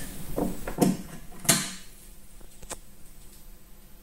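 Brief low speech fragments in the first second or two, then quiet room tone with a couple of faint clicks.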